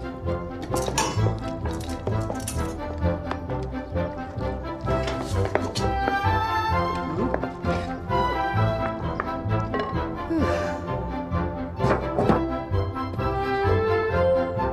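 Film score music playing, with a few thunks of objects being knocked or set down over it.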